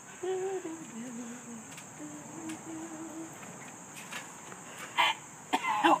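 A child's voice humming a short low phrase that steps down in pitch, then holding one steady note for about a second, over a steady high insect buzz. A shout of "help" comes in at the very end.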